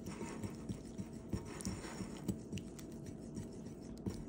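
Fingers squishing and kneading soft, oily flour-and-red-palm-oil dough in a ceramic bowl: faint, irregular squelches and light taps, over a faint steady hum.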